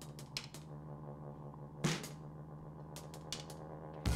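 Sparse passage of the song: sustained low notes with a few scattered sharp percussive clicks, one stronger hit about two seconds in, and no drum kit.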